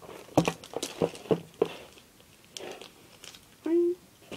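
Small novelty erasers and their plastic packaging handled close to the microphone: a quick run of clicks, taps and crinkles in the first couple of seconds, then softer rustling, with a short hum-like voice sound near the end.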